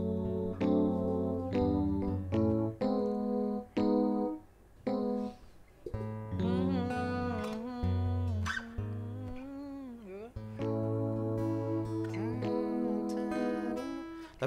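An electric keyboard and an acoustic guitar play a slow chord progression together, in short held chords with brief breaks between them.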